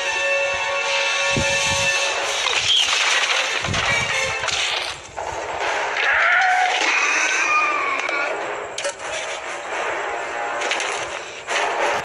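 Film soundtrack: orchestral music with long held notes. About six seconds in come gliding screeches from a velociraptor, mixed with sharp crash effects.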